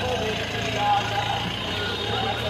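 Indistinct voices talking over a steady low hum of an idling engine.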